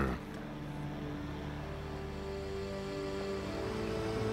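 Background music of sustained, held synthesizer-like notes over a low drone, the chord changing twice.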